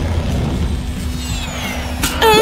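Cartoon sound effects: a steady low whooshing rumble, joined about halfway through by a high whistle that slides steadily downward, the classic falling whistle.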